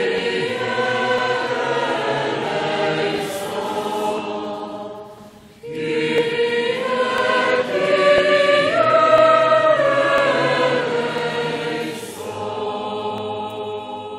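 A church congregation sings the sung response to an intercession in the prayers of the faithful. It comes in two phrases, with a brief break about five seconds in, and the singing tails off near the end.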